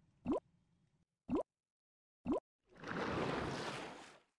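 Logo-animation sound effects: three short blips about a second apart, each rising quickly in pitch, then a soft whoosh lasting about a second near the end.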